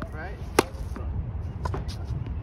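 A tennis racket strikes a ball once with a sharp, crisp pop about half a second in, followed by a few fainter clicks.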